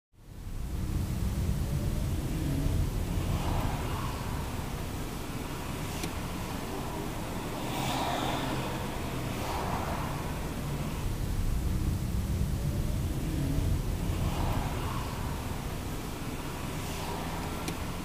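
Steady low rumble of engine and road noise inside a moving car's cabin, with a few gentle swells. It fades in at the start.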